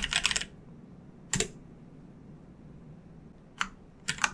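Computer keyboard typing: a quick run of keystrokes at the start, then two single clicks, one about a second and a half in and one near the end.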